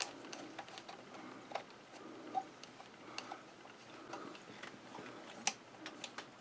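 Faint, scattered small clicks and ticks of metal parts as the bobbin winder, with its new rubber tire, is handled and seated on a Singer 237 sewing machine, with a slightly louder click near the end.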